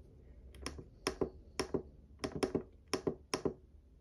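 Plastic buttons on a small digital pocket scale pressed repeatedly: about a dozen short sharp clicks, mostly in quick pairs, as the display is switched from grams to ounces.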